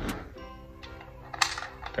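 Small sharp clicks, one about one and a half seconds in and another near the end, as BBs are pressed one by one into a BB gun's magazine, over quiet background music.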